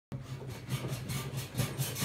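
An Equicizer mechanical horse being ridden at a fast, even rhythm: the frame and saddle rub and rasp with every stroke, several times a second.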